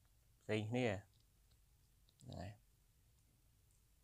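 A short spoken word, then a few faint clicks and a soft, brief voiced sound a little after two seconds in.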